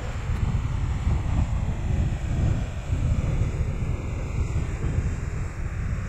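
Wind buffeting the microphone, a gusty rumble, over lake surf breaking and washing up the shore.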